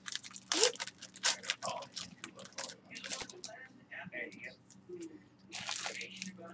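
Foil wrapper of a Crown Royal football card pack crinkling and tearing as it is opened, with cards being handled. It is a run of short crackles, loudest near the end.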